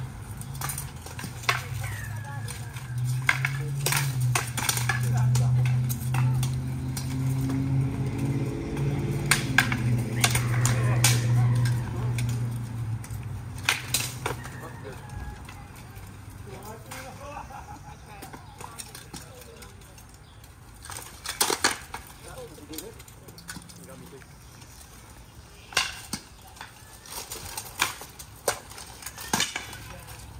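Wooden batons clacking against each other and against steel plate armour in an armoured melee: irregular sharp knocks, with a quick flurry of blows about two thirds of the way through. A low droning hum underlies the first dozen seconds, rising a little in pitch before it fades.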